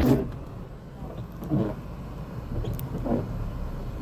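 Low, steady rumble of a car running, heard from inside the cabin.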